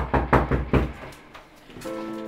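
About four quick, heavy knocks on a wooden door in the first second, followed near the end by music coming in with a sustained chord.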